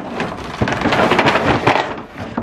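Plastic wrap and cardboard packaging crinkling and rustling as a plastic-wrapped toy slides out of a tipped-up cardboard box. It is a dense, continuous crackle, fullest in the second half.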